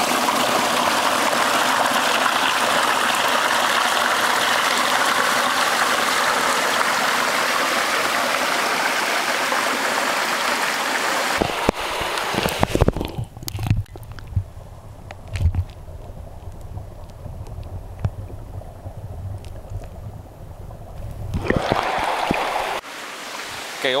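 Small mountain stream cascading over rocks into a pool, heard up close as a loud, even rush of water. About halfway through, the rush gives way to a muffled low sound with scattered knocks and bumps as the recorder is held at the pool's surface. The rushing returns briefly near the end.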